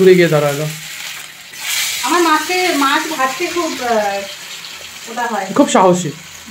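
Pieces of fish sizzling as they fry in hot oil in a pan, a steady hiss heard under a person talking on and off.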